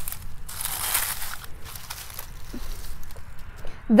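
Dry grass and dead plant stems rustling and crackling, louder in the first second and a half, then fainter.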